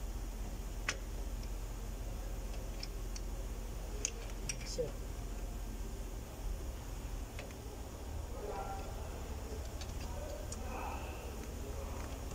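Sparse, light metallic clicks of a wrench or monkey pliers working the rear brake caliper piston, turning it back into the bore for new pads, over a steady low hum.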